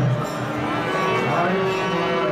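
Devotional singing with long held low notes and a short rise in pitch about one and a half seconds in, heard through the reverberant crowded hall.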